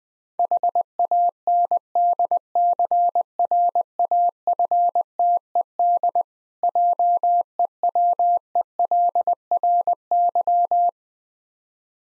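Morse code sent at 20 words per minute as a single steady tone keyed in dots and dashes, spelling out "handcrafted jewelry", with a longer word gap a little past the middle.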